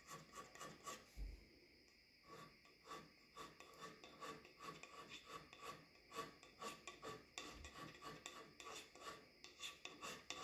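Hand scraper shaving cast iron off a lathe's compound slide: faint, quick, short scraping strokes, a few a second, with a brief lull about a second in. The strokes take down the high spots shown by marking blue, to flatten a slide that rocked and let the lathe chatter.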